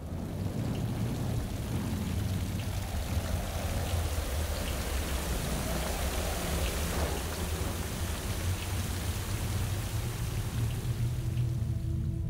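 Thunderstorm sound effect: steady rain with a deep low rumble of thunder underneath and a few faint drop ticks. Near the end a low sustained musical tone comes in over it.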